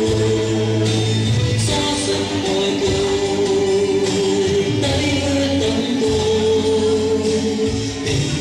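Christian gospel song with singing over a steady bass line, playing continuously.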